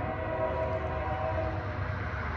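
Diesel freight locomotive's air horn sounding a chord of several notes at once, which cuts off about a second and a half in, over a low steady rumble from the approaching train.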